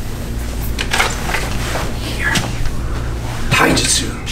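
Scuffs, rustles and light knocks from people moving through sword practice on a dojo training floor, several in quick succession, with a louder rustle near the end. A steady low hum runs underneath.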